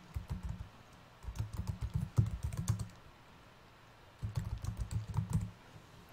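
Typing on a computer keyboard: three runs of quick keystrokes, separated by short pauses.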